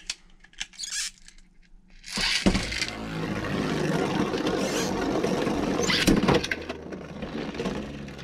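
Beyblade Burst tops launched into a clear plastic stadium about two seconds in, then spinning and grinding against the stadium floor in a steady rasp, with a sharp knock about six seconds in.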